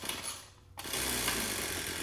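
Ryobi RY253SS two-stroke string trimmer engine, pull-started on full choke after priming: it catches about a second in and then runs steadily.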